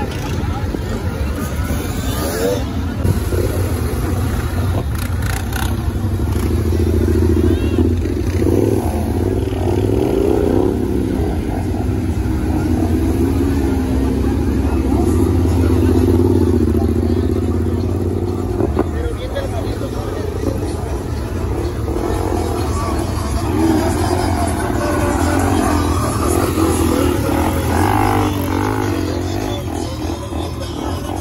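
Dirt bike and quad bike engines running and revving over the chatter of a large crowd, growing loudest around the middle as one rider comes close.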